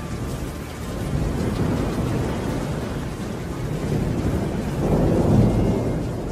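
Thunderstorm sound effect closing a song: rumbling thunder over steady rain. The thunder swells about a second in and is loudest about five seconds in.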